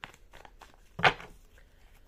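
Tarot cards being shuffled and handled, making light flicks and rustles, with one louder tap about a second in.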